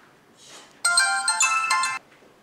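Mobile phone ringtone: a bright electronic melody that plays for about a second and cuts off suddenly.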